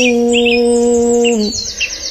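A woman's voice in Qur'anic recitation holding one long, steady note at the end of a phrase, breaking off about one and a half seconds in. Short bird chirps sound behind it throughout.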